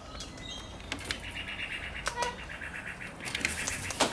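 Birds chattering in two rapid, evenly pulsed trills, with a few sharp clicks between them. Right at the end comes a sulphur-crested cockatoo's wingbeats as it flaps in close.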